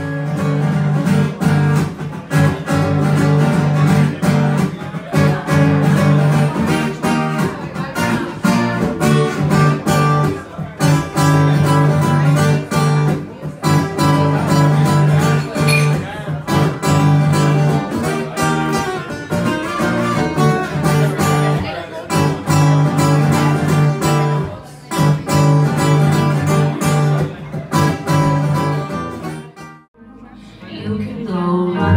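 Two acoustic guitars played together live, a busy rhythmic mix of picking and strumming that runs on with only brief breaks.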